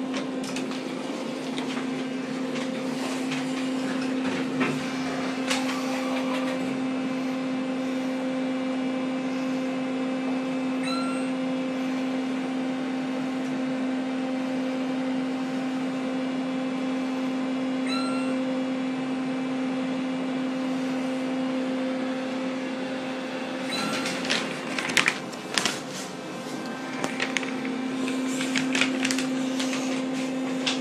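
Otis elevator car descending with a steady hum, and three short electronic chime tones about six to seven seconds apart as it passes floors. Clattering knocks near the end as the car arrives.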